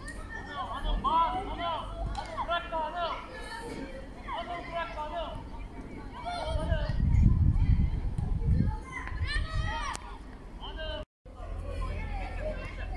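High-pitched, indistinct shouts and calls from young players and people around the pitch, in short bursts. A low rumble comes in around the middle, and the sound drops out briefly near the end.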